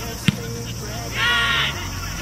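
A single sharp knock of a football being kicked about a quarter second in, then about a second in one loud, harsh call lasting half a second, over faint voices from the pitch.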